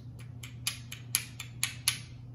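Small hand-held herb grinder, skate-wheel style with bearings, being twisted back and forth to grind cannabis flower. It gives a row of short sharp clicks, about four a second.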